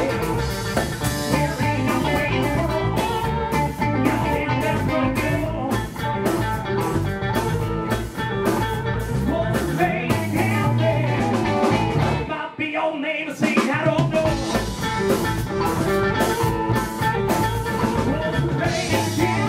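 Live blues-rock band playing: electric guitars, bass and drum kit under a harmonica played cupped against a vocal mic. About twelve seconds in the band stops for roughly a second, then comes back in.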